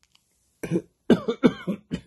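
A man coughing: a short bout of several quick coughs, starting about half a second in.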